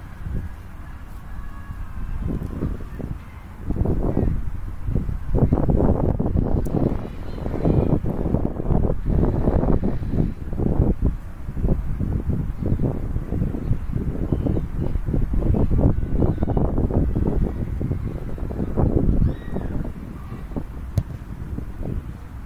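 Wind buffeting a handheld camera's microphone in irregular gusts, a low rumble that gets louder about four seconds in.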